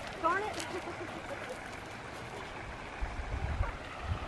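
A brief high voice near the start over a steady faint outdoor hiss by the river. A low rumble on the microphone comes in about three seconds in.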